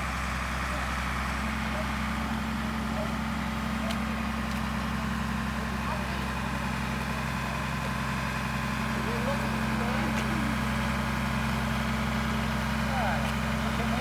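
Truck crane's engine running steadily as a low, even hum while it hoists a heavy load.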